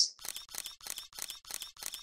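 A rapid series of about eight sharp clicks, evenly spaced at about four a second.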